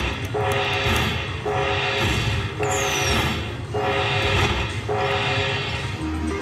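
Slot machine's bonus-tally music: a short jingle repeating about once a second as the win meter counts up the collected coin prizes after free spins. A swoosh is heard about halfway.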